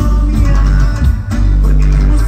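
Live cumbia band playing through a large sound system, bass-heavy, with electric bass guitar and percussion.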